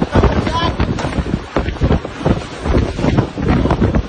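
Typhoon-force wind blowing through a storm-damaged building interior, hammering the phone's microphone in heavy, uneven gusts, with irregular knocks and clattering from loose debris.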